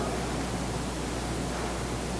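Steady hiss from the microphone and sound system with a low electrical hum underneath: the room tone of an amplified hall during a pause in speech.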